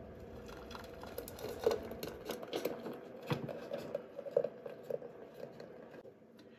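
Foamy whipped-cream mixture poured from a glass measuring cup into an ice cream maker's bowl: faint, irregular soft plops and small clicks as it slides out.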